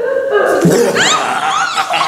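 A woman and a man laughing together, loud and continuous, with high-pitched squealing laughs about a second in.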